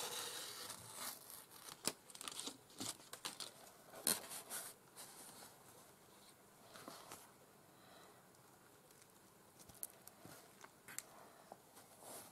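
A backing sheet being peeled off and paper and fabric rustling and crinkling as a fabric covering is smoothed down by hand onto a journal cover. The rustles are busiest in the first few seconds, then thin out to a few scattered touches.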